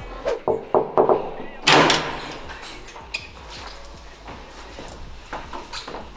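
A few short knocks and clicks, then one loud, brief, noisy thud about two seconds in, followed by faint scattered sounds.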